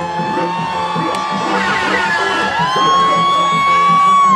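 Live reggae band playing, with two long, high held notes carried over the music one after the other, the second starting about halfway through, and a crowd whooping along.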